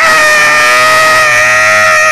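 A person's loud, high-pitched scream held on one steady pitch.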